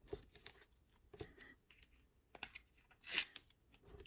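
Masking tape being peeled and torn off a stack of plastic top-loader card holders, with light clicks of the rigid plastic being handled and one louder rip a little after three seconds in, where the tape tears unevenly rather than coming off cleanly.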